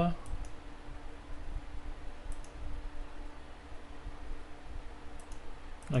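Computer mouse clicking: a few faint pairs of quick clicks spread through, over a low steady hum.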